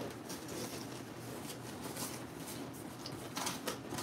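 Paper banknotes and a small cardboard box being handled: quiet rustling and light scraping as bundles of bills are pressed down into the box and its flaps are folded over, with a short run of cardboard crinkles near the end.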